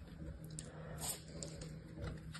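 Hands crumbling and squeezing kinetic sand in a plastic tray: soft, quiet crunching with a few small crisp crackles about half a second and a second in.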